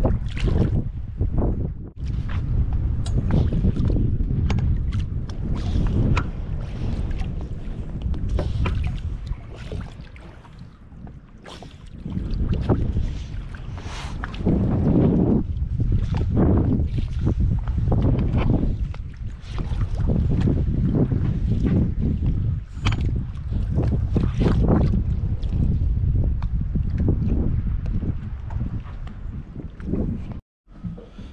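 Wind buffeting an open microphone on a boat's deck, a gusty low rumble that rises and falls and eases off for a couple of seconds around ten seconds in.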